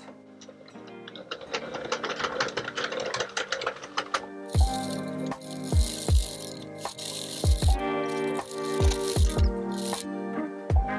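Sentro 48-needle circular knitting machine being hand-cranked, its needles clicking in a fast ratcheting clatter. From about halfway, background music with a steady beat comes in over it.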